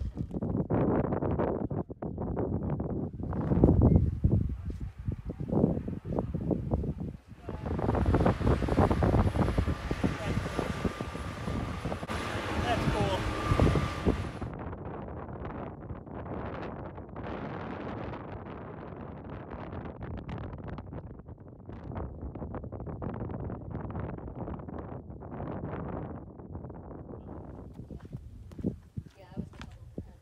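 Wind buffeting the microphone in gusts, with indistinct voices under it; about halfway through the sound turns to a steadier hiss with a faint high whine, then back to quieter wind.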